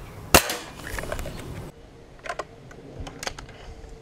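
Anschütz Hakim spring-piston air rifle firing a single shot about a third of a second in: one sharp crack with a ringing tail lasting about a second. A few lighter clicks follow two to three seconds in.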